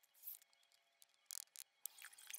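Faint, brief scrapes and ticks of a hand tool working wet concrete: one short scrape near the start and a louder one a little past halfway, with small clicks after it.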